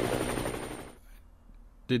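Helicopter sound effect, a rapid, even chopping of rotor blades, fading out over about the first second; quiet after that.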